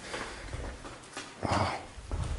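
Footsteps on a hard floor in an empty room, with one short, louder sound about one and a half seconds in.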